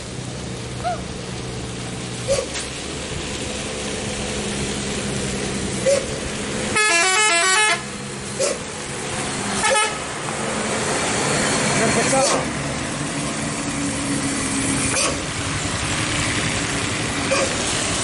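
Heavy truck engine running as vehicles pass slowly on a wet road, with several short horn toots. About seven seconds in, a loud multi-tone horn plays a rapid tune of alternating pitches for about a second.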